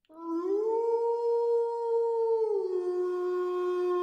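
A wolf howling: one long call that rises in pitch at the start, holds, then slides down to a lower steady note about two and a half seconds in.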